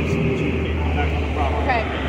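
Low steady rumble of road traffic, with faint voices in the background.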